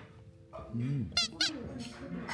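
A man's short "mm" hum of approval while tasting, followed by two quick, high-pitched squeaks about a quarter second apart.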